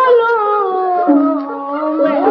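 Burmese hsaing waing ensemble music: a wailing lead melody that slides down in pitch over the first second and then holds a long, lower note.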